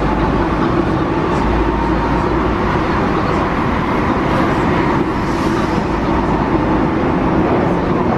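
Paris Metro MF 77 train running at speed through a tunnel, heard from inside the carriage: a steady, even rumble of wheels on rails with a faint steady motor hum.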